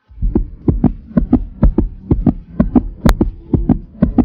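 A steady rhythm of deep thuds, about four a second and falling in pairs, with no melody over it: the beat of an added soundtrack.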